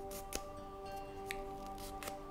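A small sheet of paper crinkling and crackling in scattered short clicks as it is folded by hand. Soft background music of held, steady chords plays underneath.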